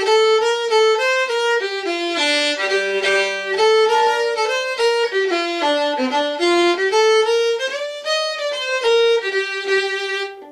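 Solo fiddle bowing a phrase of an Irish jig in G minor, mostly single notes, with a lower held drone note sounding under the melody for about a second near the three-second mark.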